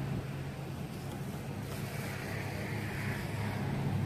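A steady low mechanical hum under a soft, even hiss of background noise.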